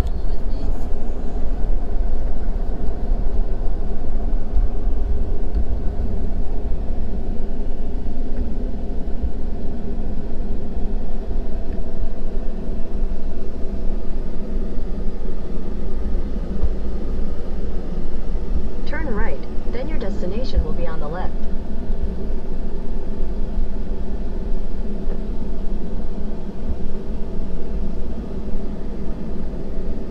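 Steady cab-interior drone of a Ford F-450 dually pickup's diesel engine and tyres rolling along a ranch road, with a deep continuous rumble. A brief voice-like warble breaks in about two-thirds of the way through.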